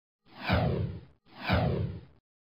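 Two identical whoosh sound effects, one after the other, each just under a second long and falling in pitch.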